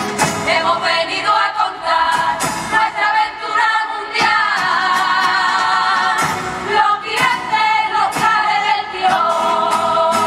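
A women's carnival murga singing in chorus at full voice, accompanied by guitar and drum strokes.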